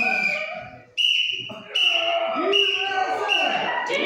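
People's voices in a large hall, with four short high steady tones from about a second in, evenly spaced about three-quarters of a second apart.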